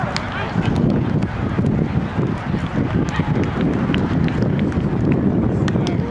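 Wind on the microphone over background voices, with several sharp taps from players hitting the ball during a roundnet rally.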